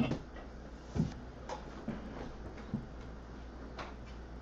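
Quiet room with a steady low hum and a handful of faint short clicks and soft knocks, roughly one a second.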